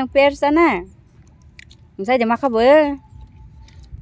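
Speech: two short, high-pitched voiced phrases, one in the first second and another about two seconds in, with quiet between.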